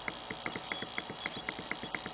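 Rapid, even clicking of a phone's navigation key being pressed over and over, about six or seven clicks a second, each with a short high beep, as the menu scrolls down a list.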